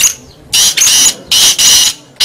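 Black francolin calling: a brief note at the start, then two loud, harsh phrases, each in two parts, about three-quarters of a second apart.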